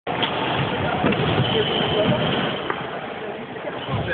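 Badminton hall noise: a wash of voices with a few sharp clicks of rackets hitting the shuttlecock, and a high squeak lasting about a second, starting a second and a half in.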